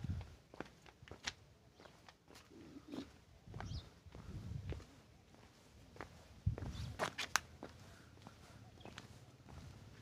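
Footsteps on a stone-paved path, with a few short bird chirps heard faintly in between.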